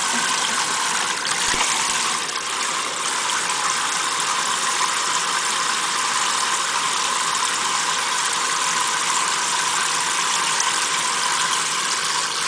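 Kitchen faucet spraying water steadily onto a parrot and into a stainless steel sink, an even hiss that holds level throughout.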